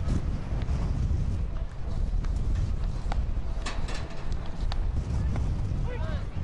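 Outdoor ballpark ambience dominated by wind rumbling on the microphone, with faint crowd voices and a few light clicks around the middle.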